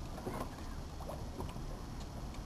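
Harbour ambience: a steady low rumble with scattered short, faint squeaks and ticks.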